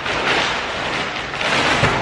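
Large clear plastic mail sack rustling and crinkling as it is handled close up, in two loud surges.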